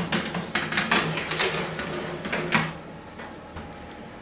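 Metal baking tray pushed into an oven along the wire rack guides, a dense run of scraping, clattering metal knocks over the first two and a half seconds, then a quieter steady stretch.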